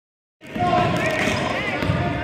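Basketball dribbled on a hardwood gym floor, a low thump at each bounce, over voices and chatter from the people watching.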